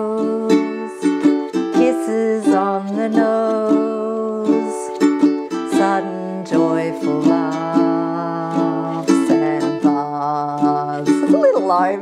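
Ukulele strummed in steady, repeating chords.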